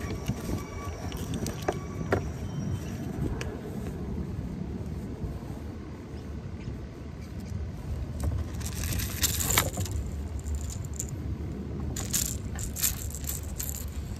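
Metal clinking and jangling of pliers against a lipless crankbait and its treble hooks as a hook is worked out of a small bass's mouth, in scattered clicks with busier clusters near the end, over a low steady rumble of wind and water.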